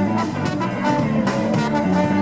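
Live band playing with electric guitars, bass, drums and a brass horn, over a steady drumbeat.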